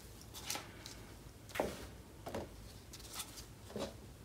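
Quiet handling noises: a few soft, scattered taps and rustles as small plastic cauldrons are set down and shifted on a stretched canvas by gloved hands.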